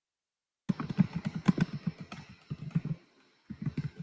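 Computer keyboard typing picked up over a web-conference call microphone: dead silence for a moment, then a quick run of key clicks with a short pause near the end.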